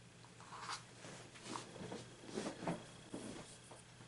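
Quiet, uneven rustling and scratching of yarn and crocheted fabric being handled as a metal crochet hook works double crochet stitches, in a few irregular bursts.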